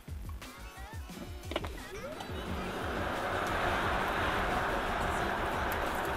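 Background music with a steady beat over the cabin noise of a Tesla Model S P85D launching in insane mode. From about two seconds in, a rush of wind and road noise builds and stays loud as the car accelerates hard.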